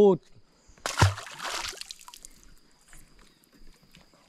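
A bass released back into the lake: one sharp splash about a second in, followed by a brief slosh of water that fades away.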